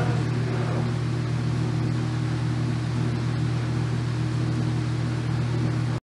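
A steady low hum over a constant hiss, which cuts off abruptly at the end.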